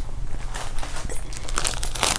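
Crinkling of a cross-stitch kit's clear plastic packaging being picked up and handled, an irregular run of faint crackles.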